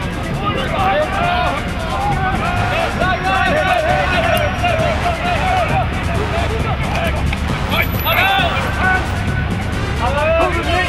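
Many voices shouting and calling over one another from the crowd and sidelines of a lacrosse game, with no single voice standing out. A brief sharp knock comes about eight seconds in.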